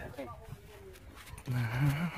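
Faint outdoor background, then about one and a half seconds in a man's voice: a low, drawn-out vocal sound that leads into speech.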